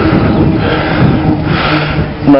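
Rear rim brake held on a steel-rimmed bicycle in the wet, the pads rubbing on the rim with a steady scraping noise and a low hum that drops in pitch about halfway through. The bike slows only gradually: steel rims brake poorly in the wet.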